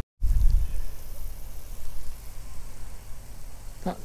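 Wind buffeting the microphone outdoors: a gusty, uneven low rumble over a faint steady hiss, starting after a momentary dropout.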